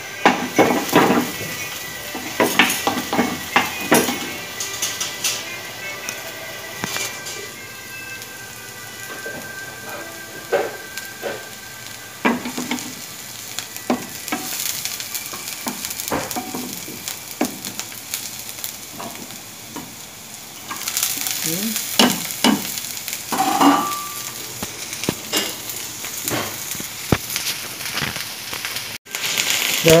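Minced garlic and onion sizzling in hot oil in a nonstick frying pan, stirred with a wooden spatula that scrapes and knocks against the pan. The sizzle grows louder about two-thirds of the way through.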